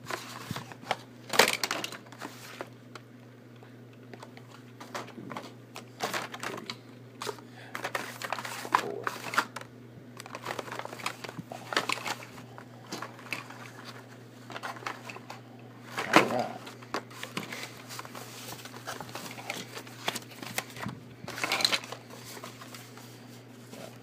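Carded Hot Wheels blister packs being handled and shuffled: scattered plastic crinkling and clacks, with sharper knocks about a second and a half in, around two-thirds of the way through and again near the end. A low steady hum sits underneath.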